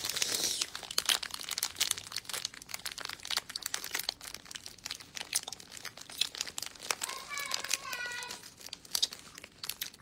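Plastic gummy-snack bag crinkling and crackling as it is handled: a dense, irregular run of sharp crackles, loudest at the start.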